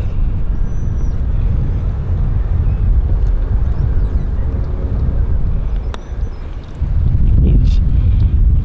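Wind buffeting the microphone with a steady low rumble. Near the end, a single sharp click of a golf club striking the ball on an approach shot.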